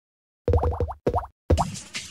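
Cartoon bubble-pop sound effects for an animated logo intro: a quick run of short rising plops in three bursts, starting about half a second in after silence.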